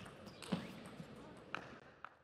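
Table tennis rally: the celluloid-type plastic ball clicking sharply off rackets and table about every half second, three hits in all.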